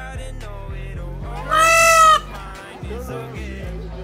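A peacock gives one loud call about a second and a half in, lasting well under a second, over a background pop song with guitar.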